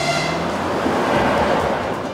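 Suburban electric train passing at speed: a rushing noise that swells and is loudest in the second half.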